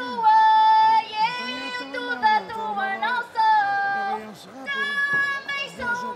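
Women of a Portuguese folk group singing a folk song in a high register, in long held notes that slide up and down between pitches.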